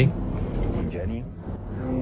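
Faint speech over a steady low background rumble.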